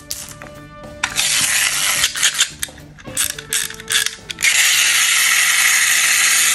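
Wind-up chattering-teeth toy: its key is turned in several bursts of ratchet clicking, then from about four and a half seconds in the released clockwork runs with a steady buzz.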